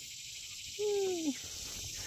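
Steady high-pitched chorus of summer insects buzzing and trilling in tall grass and brush, with a brief low falling hum about a second in.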